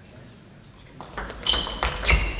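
Table tennis ball in play, starting about a second in: a serve and return, with three sharp clicks of ball on bat and table. The loudest, about halfway through, has a short high ring.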